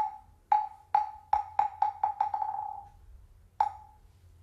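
Moktak (Korean wooden fish) struck in a speeding-up roll: single knocks that come closer and closer together, running into a fast roll that fades out, then one lone stroke near the end. This is the signal that opens the chant.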